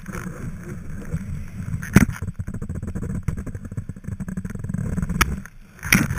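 Skis running over snow, picked up by a GoPro mounted on the skier's knee: a steady low rumble with scraping, and sharp knocks about two seconds in and twice near the end.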